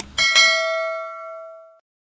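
A bright bell chime sound effect, struck twice in quick succession and ringing out for about a second and a half before cutting off.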